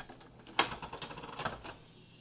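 Canon MP190 inkjet printer's plastic front cover being swung open by hand: a sharp clack about half a second in, then a run of rapid mechanical clicks and rattles lasting about a second.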